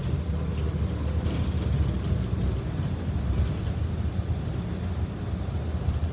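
Transit bus heard from inside its cabin while driving: engine and road noise as a steady low rumble.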